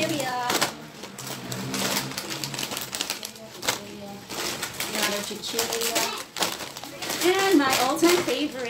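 Plastic snack packets rustling and crackling as they are taken from a bag and handled, a string of short crisp noises. A voice talks near the start and again near the end.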